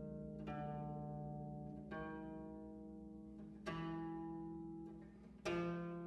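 Bass zither playing single plucked notes, each left to ring and slowly fade as the next one sounds. There are four notes about two seconds apart, and the last two are the loudest.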